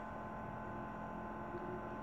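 Steady faint electrical hum with a light hiss: the room tone of a home recording.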